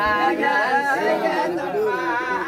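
Several people's voices overlapping, a room full of chatter.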